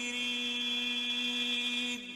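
Middle Eastern chant-style singing holding one long, steady note, which dies away near the end.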